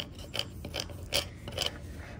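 Transfer tape being rubbed down by hand over a vinyl decal on a wooden table to make it adhere, giving small irregular clicks and crackles.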